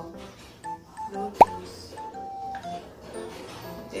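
Light background music with soft melodic notes, and a single short pop sound effect, dropping quickly in pitch, about a second and a half in.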